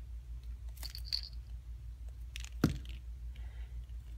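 Rabbit nosing and gnawing at a small wooden knot chew toy, the wooden pieces giving a few sharp clicks and knocks, the loudest about two and a half seconds in. A steady low hum runs underneath.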